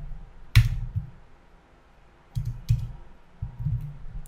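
Clicks of a computer keyboard: one sharp click about half a second in, then after a pause a handful of lighter clicks in the last second and a half.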